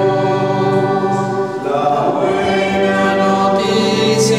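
Choir singing a hymn in long held chords, with a change of chord about halfway through.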